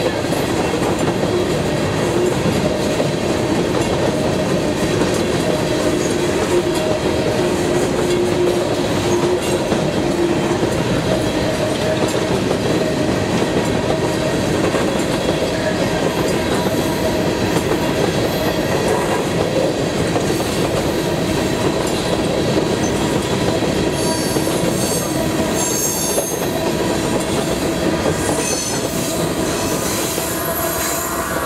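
Loaded or empty coal gondola cars of a long freight train rolling past, with a steady rumble and clatter of steel wheels on rail. About six seconds before the end, high-pitched wheel squeals come in and flicker on and off.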